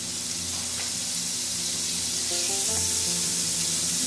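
Butter sizzling as it melts in a hot cast-iron skillet, the sizzle growing slightly louder. Soft background music plays underneath.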